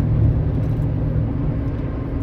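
Steady road and engine rumble inside a vehicle's cabin while driving at freeway speed.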